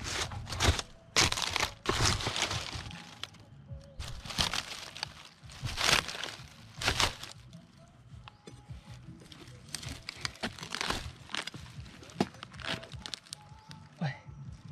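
Large knife chopping and prying into the fibrous trunk of a felled palm, a run of irregular sharp cracks and crunches with fibres tearing. The blows are loudest and closest together in the first seven seconds, then lighter.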